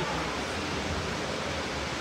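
Steady, even background hiss of ambient noise with no distinct sound standing out.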